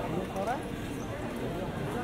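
Pedestrian street ambience: footsteps on stone paving and passers-by talking.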